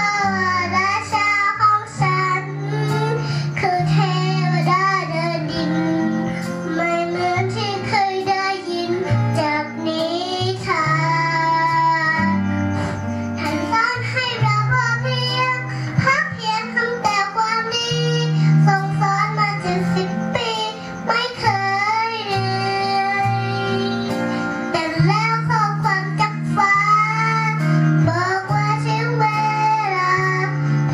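A young girl singing a song over backing music, her voice rising and falling against sustained bass notes that change every second or two.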